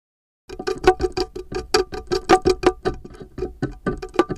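Contact-mic recording from the surface of a jackfruit as its knobbly rind is pushed across a stone ledge. A rapid, irregular run of sharp clicks and knocks, each ringing briefly with the fruit's hollow body tone, starts suddenly about half a second in.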